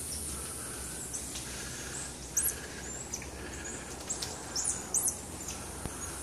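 Short, sharp high-pitched animal chirps, a scattered series that bunches up about four to five seconds in, over a steady high hiss.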